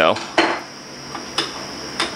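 Aluminum lure mold being handled and opened, its metal halves knocking and clinking against each other and the metal injection jig: a sharp knock about half a second in, another a second later, and a few lighter clicks.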